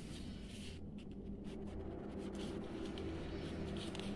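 Faint rustling and scraping of a sheet of paper as fingers fold it and run along the crease, over a low steady hum.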